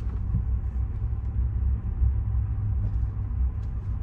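Low, steady rumble of a car moving slowly, heard from inside the cabin: engine and tyre noise with no sudden events.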